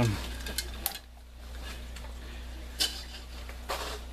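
Hands scooping and pressing potting soil into a plastic barrel planter: soft rustles and small scrapes, with two short louder scrapes a little under three seconds in and near the end.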